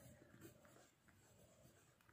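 Very faint scratching of a pen writing on a paper page, close to silence.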